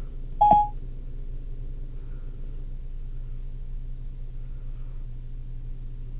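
A single short electronic beep about half a second in: Siri's tone as it finishes taking the "open maps" command, played through the car's Ford Sync audio system. A steady low hum runs underneath.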